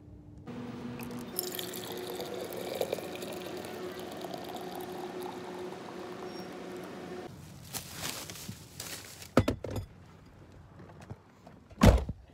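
Hot coffee pouring from a dispenser spout into a stainless steel vacuum bottle: a steady stream that runs about seven seconds and stops abruptly. A few sharp knocks follow, the loudest near the end.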